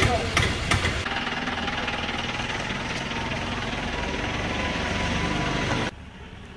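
A vehicle engine running steadily at idle with a knocking beat, ending abruptly near the end.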